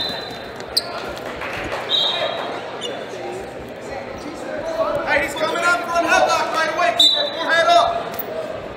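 Busy wrestling gym: short, steady, high whistle blasts, one about two seconds in and another near the end, over shouting voices and the constant din of a crowded hall.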